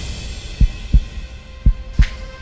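Heartbeat sound effect in a suspense soundtrack: deep paired thuds, lub-dub, about one pair a second, over a faint held music tone.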